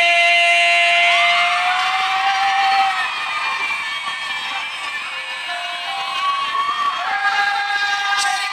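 A singer holds a long belted note over the backing track until about three seconds in, while the audience cheers and shouts. After a softer stretch, a second held note begins near the end.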